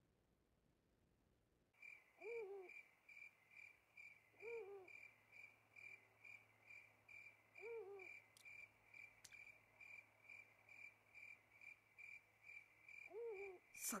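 Faint night ambience from the anime soundtrack: a cricket chirping in a steady pulsing trill and an owl hooting four times. It starts about two seconds in, after near silence.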